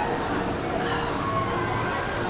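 Steady outdoor background noise with faint, distant voices.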